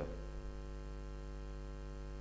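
Steady electrical mains hum, a set of constant tones layered together, carried through the podium microphone's sound system.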